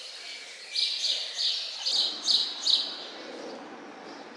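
A bird chirping: a run of about six short, high calls in the first three seconds, over faint background noise.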